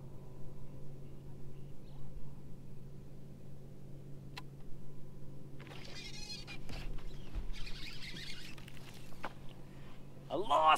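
Baitcasting reel and fishing line during a hookset on a bass: a single click, then from about five and a half seconds a scratchy, rippling whir of line and reel lasting about a second, with a second burst about two seconds later.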